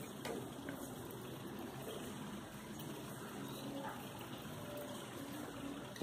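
Steady faint hiss of background noise, with no distinct sound standing out.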